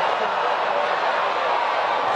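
Stadium crowd noise from a football game: a steady din of many voices with no single sound standing out.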